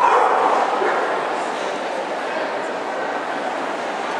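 A dog barking, loudest in the first second, over the steady chatter of a crowded show hall.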